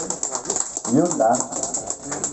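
Scattered applause from a small group of people: uneven, overlapping hand claps.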